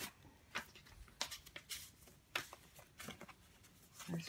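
Tissue paper rustling and crinkling as hands dig into a packed box and lift out a card. The sound is faint, with a scatter of short crackles.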